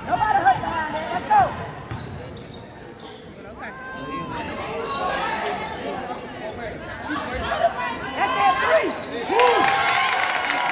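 Indoor basketball game: a ball being dribbled and sneakers squeaking in short chirps on the hardwood court, with shouting from players and spectators. Near the end the crowd noise swells with clapping as a shot goes up.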